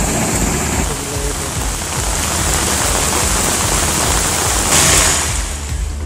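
Steady rushing noise of heavy rain and floodwater, briefly louder about five seconds in, over a background music bed with a regular low beat.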